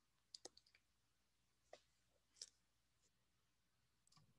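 Near silence, broken by a few faint, short clicks: a small cluster about half a second in, then single clicks at about one and three-quarter and two and a half seconds.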